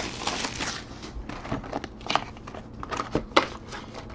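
Clear plastic wrapper crinkling and crackling as it is handled, in irregular bursts with small clicks and taps.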